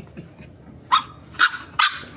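A small dog barks three short, sharp times, about half a second apart, starting about a second in.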